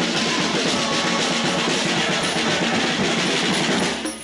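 Hand-held frame drum beaten in a steady rhythm within the continuous din of a marching crowd.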